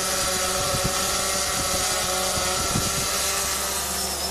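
A camera drone hovering overhead, its propellers giving a steady whine of several held tones, with wind rumble on the microphone.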